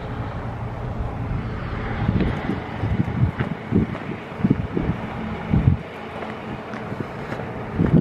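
Wind buffeting a handheld camera's microphone, with a steady low rumble and a few irregular low thumps in the middle.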